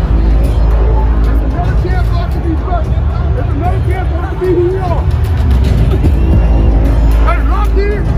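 Loud stadium ambience: music with a heavy, steady bass over the hubbub of a large crowd, with snatches of nearby voices.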